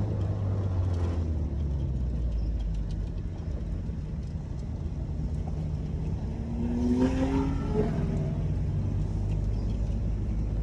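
Nissan B12 car engine heard from inside the cabin while driving, running steadily. About seven seconds in, the revs rise as the car accelerates, then the note settles again.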